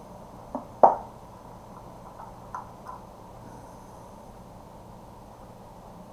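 Cable plug being pushed into a star projector: two sharp clicks about a second in, the second much louder, then a few faint ticks over a steady low room hum.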